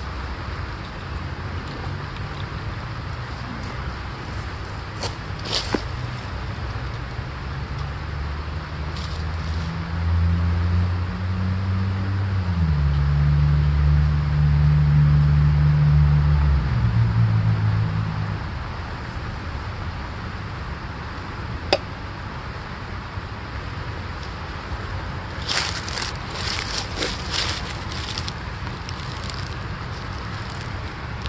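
A distant engine's low rumble swells for several seconds in the middle and then fades, over a steady low background hum. A few sharp clicks, and a run of light clicks and rustles from hands handling a plastic fish tank near the end.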